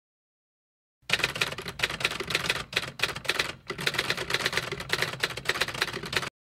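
Typewriter keys clattering in a rapid, dense run of strikes that starts about a second in, with a few brief pauses.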